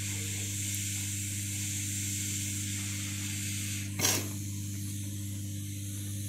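Hot air rework station blowing a steady hiss of air over a low motor hum, with one short sharp noise about four seconds in.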